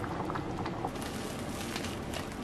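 Butter chicken curry sauce bubbling at a steady simmer in a pan, with small scattered pops, as a wooden spatula stirs the chicken in.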